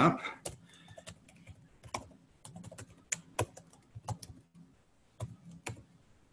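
Typing on a computer keyboard: irregular keystrokes in short quick runs with brief pauses between them.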